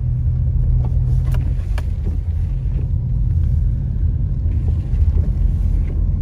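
Car driving on wet pavement, heard from inside the cabin: a steady low rumble, with a few faint ticks in the first two seconds.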